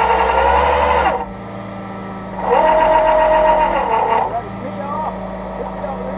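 Tow truck's winch running in two bursts, each a loud whine that rises at the start, holds steady and drops away at the end, over the steady hum of the truck idling.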